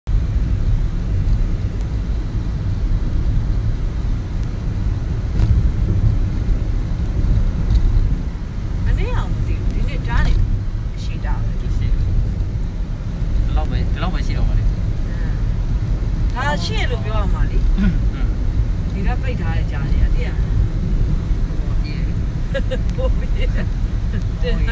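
Steady low rumble of a car driving along an open road, heard from inside the cabin. A person's voice comes in briefly several times over it from about a third of the way in.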